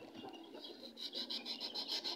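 Faint, even rasping strokes, about ten a second, from a hand tool worked against an electric fan motor; they start about a second in.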